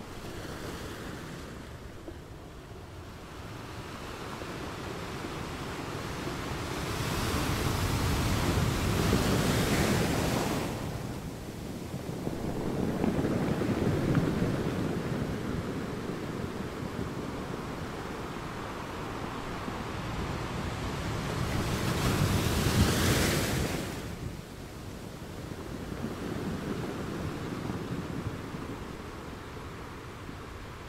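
Ocean surf breaking over a rocky shore: a continuous wash of water that swells into two loud crashes, one about a third of the way in and one about three-quarters of the way through, with a smaller surge in between.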